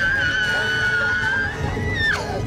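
A woman's long, high-pitched shriek, held at one pitch for about two seconds and then breaking off sharply.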